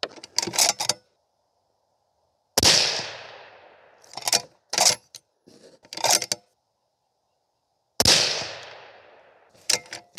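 Two shots from a bolt-action precision rifle, about five and a half seconds apart, each with a long echo fading over a second or more. Between the shots come short clicks and knocks of the bolt being worked and spent brass being handled.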